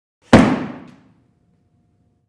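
A single heavy hit from a title sound effect: one sharp thud that dies away over about a second.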